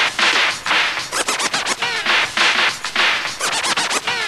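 DJ scratching a vinyl record on a turntable in quick bursts of back-and-forth strokes, the pitch sweeping up and down with each stroke.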